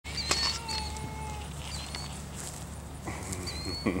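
Savannah cat giving short, high chirps, repeated several times.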